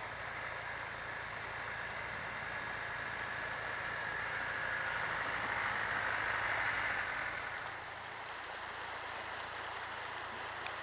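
Land Rover Defender wading through a river ford: water rushing and splashing around its wheels over a low, steady engine note. The rush of water builds to its loudest about six to seven seconds in as the vehicle passes close, then eases.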